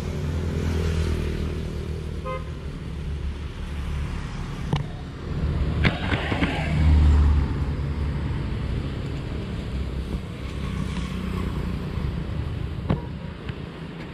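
Motor-vehicle traffic passing nearby, a steady low engine hum that swells about six to seven seconds in, with a few sharp clicks.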